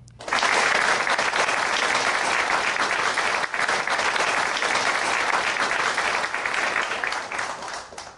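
Audience applause: a crowd clapping steadily, starting just after the start and fading out near the end.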